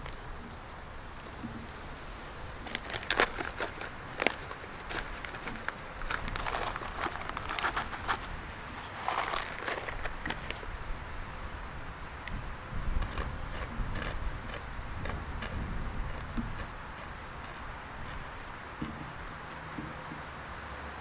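An MRE pouch of roasted corn kernels being torn open and handled: crinkling, rustling packaging with a few sharp snaps, busiest in the first half, then softer handling.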